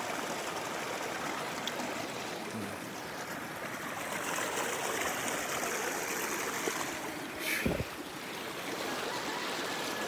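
Shallow river running over rocks, a steady rush of flowing water, with a brief thump about three-quarters of the way through.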